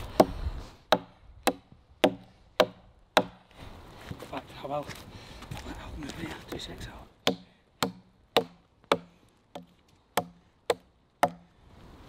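Heavily modified MOD survival knife chopping into a hard, seasoned dead log: sharp blade-on-wood strikes about twice a second, a run of six, a pause of a few seconds, then a run of eight.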